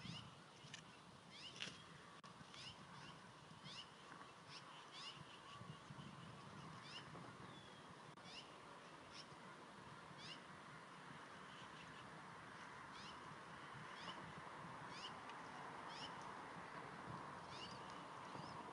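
Bald eagle eaglets peeping as the adults feed them: faint, short, high chirps, each falling in pitch, about once a second over a steady hiss.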